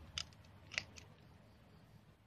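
Hand pruning shears snipping through plant stems: three short, sharp snips in quick succession, the loudest just under a second in.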